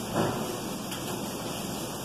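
Steady background hiss in a pause between spoken sentences, with a faint soft swell just after the start.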